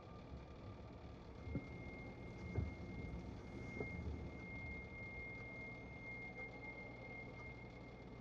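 Quiet, tense film soundtrack: a low rumble with a faint, high steady tone that sets in about two seconds in and holds, and a few soft thuds.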